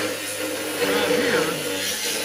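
A person speaking indistinctly over a steady low hum, which fades out about a second in.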